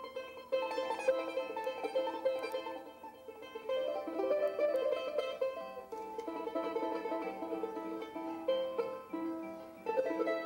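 Two charangos, small Andean ten-string lutes, played together as a duo: a quick plucked melody over strummed chords.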